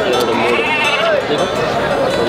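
A single wavering bleat from a goat or sheep, about half a second long, heard over men talking nearby.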